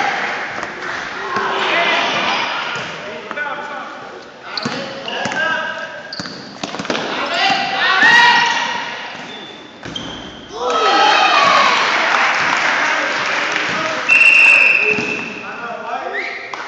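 Youth basketball game in a gym: voices calling out and a basketball bouncing on the hardwood court, echoing in the hall. About fourteen seconds in, a referee's whistle gives one short blast.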